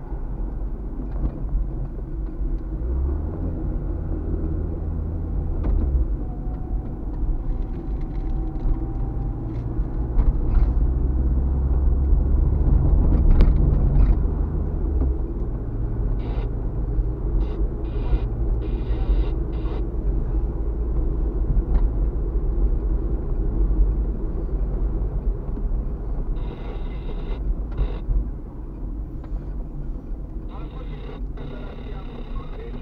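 Car driving on a city street, heard from inside the cabin: a steady low road and engine rumble that swells for a few seconds near the middle, with a few brief clicks and rattles in the second half.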